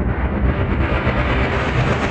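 Intro logo sound effect: a dense low rumble with a hissing whoosh, at full level and growing brighter toward the end before it starts to fade.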